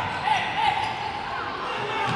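Indoor futsal match sounds: the ball being kicked and bouncing on the wooden court, over a steady hubbub of players and crowd that echoes in the sports hall.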